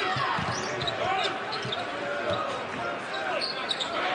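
A basketball being dribbled on a hardwood court, with short squeaks of sneakers on the floor.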